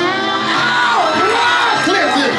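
Music playing loudly, with a crowd cheering and whooping over it.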